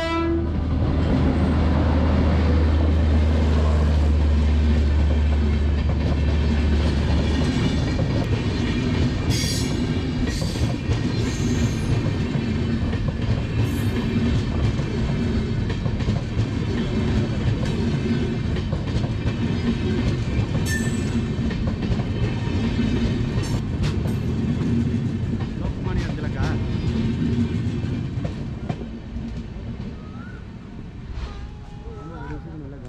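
An electric locomotive passes close by, its horn cutting off just as it arrives, with a loud deep rumble for the first seven or so seconds. After it, a long rake of passenger coaches rolls past, the wheels clattering in a steady clickety-clack over the rail joints, fading near the end as the train moves away.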